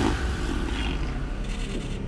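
Tigers fighting, with a steady low growling rumble.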